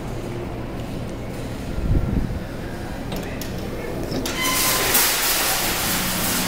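Claw machine in play: a steady mechanical hum with a knock about two seconds in. From about four seconds in, a rushing hiss joins it.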